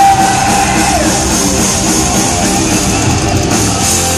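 Heavy metal band playing live, loud, with distorted electric guitars and a drum kit, heard from the crowd in a concert hall. A held high note ends about a second in.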